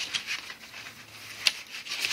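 Black cardstock pages of a handmade book being handled and folded open, paper rubbing and sliding against paper, with one sharp tap about one and a half seconds in.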